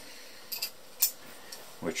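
A few light clinks about half a second in, then a single sharp click about a second in: a Phillips screwdriver being picked up and handled.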